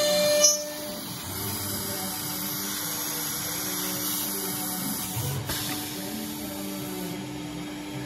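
Drilling machine running through its automatic cycle: a whining multi-tone sound cuts off about half a second in, then a steady machine hum with a low held tone as the drill head travels and works.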